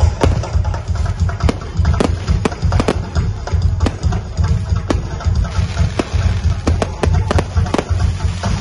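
Aerial fireworks going off in a rapid, irregular string of sharp bangs and crackles, over music with a heavy, pulsing bass.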